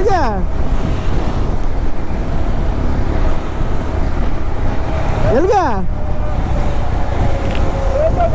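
Motorcycle riding at steady speed: a low engine drone under a steady rush of wind over the microphone.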